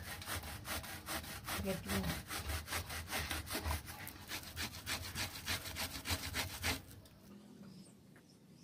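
Fibrous pulp of a ripe palmyra palm fruit being rubbed hard against a stainless steel box grater, giving even scraping strokes about four a second. The strokes stop about seven seconds in.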